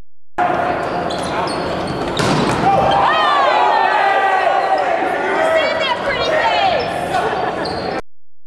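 Volleyball rally in a large gym: a sharp hit of the ball about two seconds in, then players calling out over the hall's echo.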